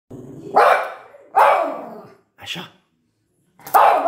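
Miniature pinscher barking in loud, sharp single barks: two about a second apart, then a pause and a third near the end.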